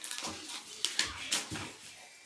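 Paper rustling and crackling as a pink card envelope is torn open and the card pulled out, a quick run of sharp crackles.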